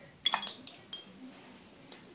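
Several light clinks with a brief bright ring, bunched in the first second, as hard-shelled Skittles and fingertips knock against white ceramic bowls of water when the candies are dropped in. A faint click comes near the end.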